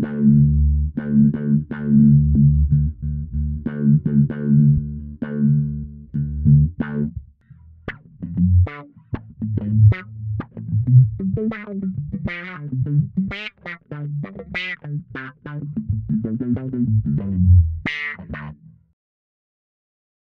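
Electric bass picked with a plectrum through a DOD FX25 envelope filter and a Darkglass Microtubes B3K overdrive: a distorted, filtered tone. It plays a repeated low note for about seven seconds, then a busier riff with brighter attacks, stopping about a second before the end.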